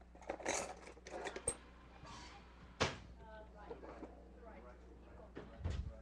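Hands rummaging among items on a table while searching for a spoon: soft handling noises with a few sharp clicks and knocks, and faint voices murmuring.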